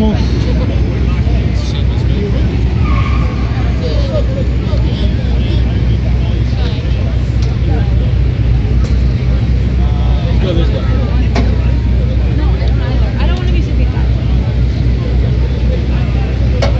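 Busy city street ambience: a steady low rumble of traffic with scattered passers-by talking and a few sharp clicks.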